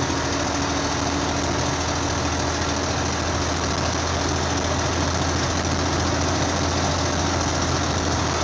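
Steady drone of a truck's engine and tyre and road noise, heard inside the cab at highway speed, with a deep hum underneath.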